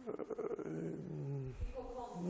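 A man's drawn-out hesitation sounds, a held low 'yyy' that slides slowly down in pitch, voiced between words while he searches for how to go on.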